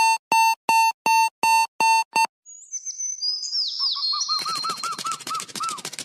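Mobile phone ringtones: a quick run of seven identical electronic beeps, about three a second, then, after a short gap, a different ringtone of bird-like chirps and warbles that grows busier over a buzzing background.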